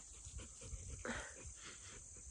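Dog panting faintly, soft repeated breaths.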